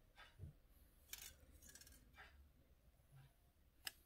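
Near silence with faint handling sounds of copper jewellery wire being bent by hand around a drilled stone heart: a few soft rustles and small ticks, with the sharpest tick just before the end.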